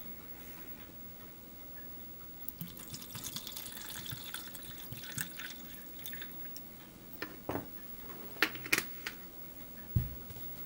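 Clear liquid poured from a plastic bottle into a small plastic cup: a steady trickling splash lasting a few seconds. It is followed by a few sharp knocks and clicks near the end.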